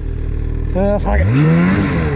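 Ski-Doo Summit 850 two-stroke snowmobile engine idling, then revving up with a rising pitch about a second in as the rider throttles the sled buried in deep powder. A short vocal sound from the rider comes just before the rev.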